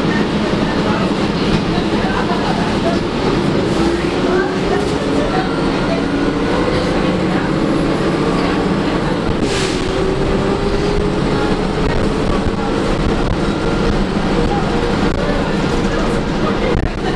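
2011 Gillig Advantage transit bus heard from inside the passenger cabin, pulling away. Its engine and drivetrain whine climbs in pitch, drops at a gear change about ten seconds in, then climbs again. A brief hiss comes just before the shift.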